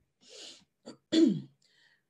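A woman's breath in, a small mouth click, then a short throat-clearing about a second in, voiced with a falling pitch.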